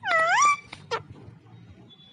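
Alexandrine parakeet giving one loud half-second call that dips and then rises in pitch, followed by two short chirps.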